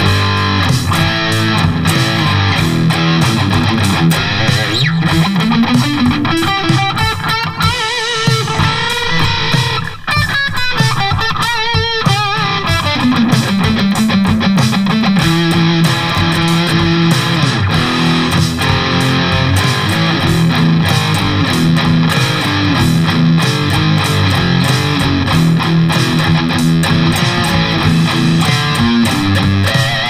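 Distorted electric guitar, a Charvel So-Cal played through an Eleven Rack modeler, tuned to drop D and played over a drum track. It plays held low notes, with a rising pitch bend about five seconds in, a wavering, wobbling passage around ten to twelve seconds in, and a falling slide just after.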